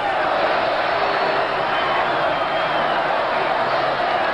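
Football stadium crowd making a steady noise of many voices.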